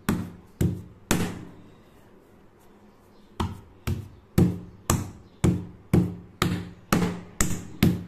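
A glass bottle pounding semolina dough on a kitchen slab to soften it: three dull knocks, a pause of about two seconds, then a steady run of ten knocks about two a second.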